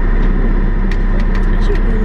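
Car engine idling, a steady low rumble heard from inside the cabin, with a few light clicks about halfway through.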